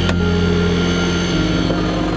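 Engine of a hydraulic rescue-tool power unit running steadily, its note shifting about 1.4 s in, with a short crack near the start.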